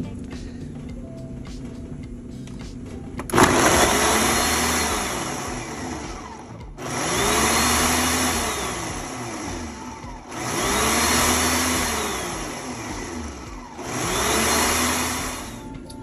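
Ninja countertop blender crushing frozen fruit and spinach for a smoothie. About three seconds in its motor starts and runs in four surges of roughly three and a half seconds each, with brief pauses between them. Each surge winds up in pitch and then back down.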